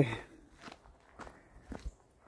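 A few faint, soft footsteps of a person walking on a trail.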